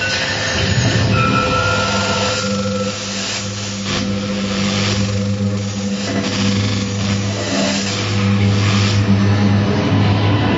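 Live laptop electronic music: a loud, dense noise texture over a steady low drone, with a thin high tone held briefly about a second in.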